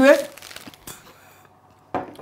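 A spoken word, then faint crinkling of plastic straw packets being handled, which stops abruptly about a second and a half in.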